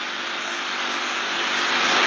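A steady hiss of background noise, with no other sound in it.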